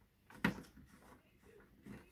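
Hands handling a steam iron and its plastic water-boiler base: one sharp click about half a second in, then faint small handling noises and a light tap near the end.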